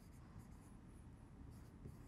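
Faint scratching and light taps of a stylus writing by hand on a screen, barely above room tone.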